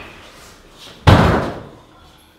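One heavy impact about a second in, a hard slam that dies away quickly with a short echo.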